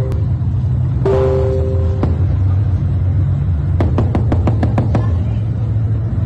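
Amateur phone recording of a city at night over a steady low rumble: a two-tone car horn blares for about a second, then, about four seconds in, a quick string of about eight sharp cracks like rapid gunfire, which sound somewhat like an air-defence barrage.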